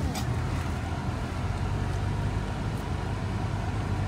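Steady low road and engine rumble inside a car's cabin, driving on a dirt road, with a brief knock just after the start.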